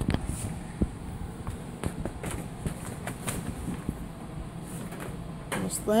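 A person moving about a basement: scattered light knocks and clicks of footsteps and handling over a low background hum, with a man's voice starting right at the end.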